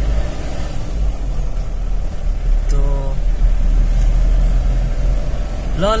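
Steady low rumble of a car's engine and road noise heard from inside the moving car, with a brief pitched sound about three seconds in.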